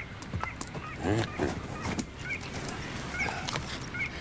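Waterfowl calling: several short goose-like honks spread over the first two seconds, with small high chirps behind them.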